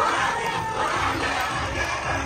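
A crowd cheering and shouting over dance music.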